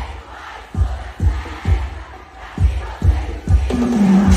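Live band music heard from the stage, a bass drum beat about twice a second under the noise of a large crowd singing and shouting along; near the end a held pitched note from a voice or instrument comes in.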